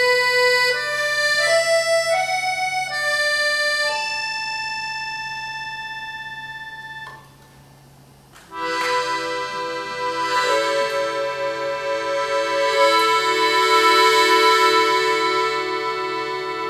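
Accordion playing a slow stepwise descending line of held notes, then one long note that stops about seven seconds in. After a short pause it sounds a sustained chord whose lower notes pulse slowly and evenly, swelling in loudness toward the end.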